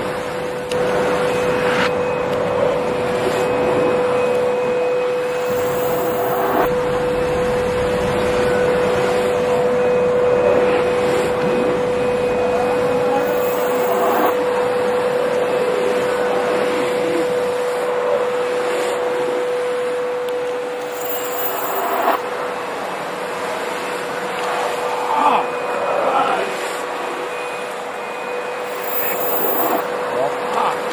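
Steady mechanical hum with a constant mid-pitched tone, over which come scattered clicks and knocks of metal parts and a hand tool as a sewing head is fastened onto its mounting bracket.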